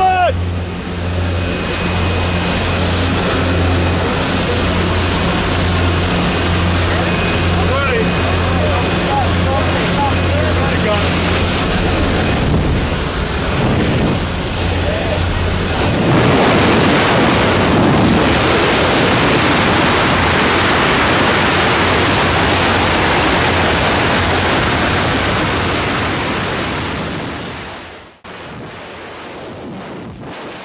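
Inside a skydiving plane's cabin: steady low drone of the propeller aircraft's engine. From about halfway it gives way to a loud rush of wind at the open jump door as the tandem pair moves to exit, and near the end it drops to the quieter, steady rush of freefall wind on the microphone.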